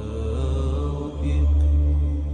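Film score music: low, sustained chant-like voices holding slowly changing notes over a deep bass drone.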